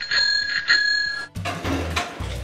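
A bell struck twice in quick succession, ringing clearly, then cut off abruptly about a second and a quarter in; background music with a steady low beat follows.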